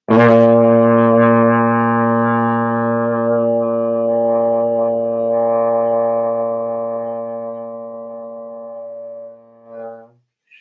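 Trombone playing a single long tone on low B flat, the opening note of a long-tone warm-up. It starts cleanly, holds steady for nearly ten seconds and fades slowly over the last few seconds before ending.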